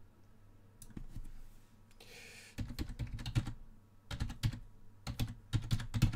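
Computer keyboard being typed on: a few scattered keystrokes, then quick runs of key clicks from about two and a half seconds in, as a name is typed into the software.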